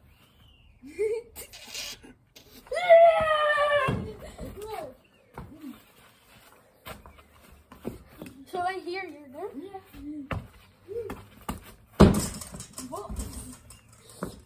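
A boy's loud, high-pitched shout about three seconds in and some wordless voicing later, then one sharp thud near the end, the loudest sound, from a football being kicked.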